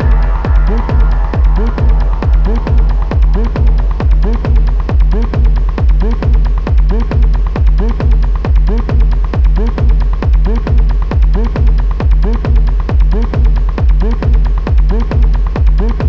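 Outro of a dark techno track: a steady, loud four-on-the-floor kick drum about twice a second, each beat carrying a short synth blip and a hi-hat tick. A sustained higher synth layer fades away in the first couple of seconds, leaving the bare beat.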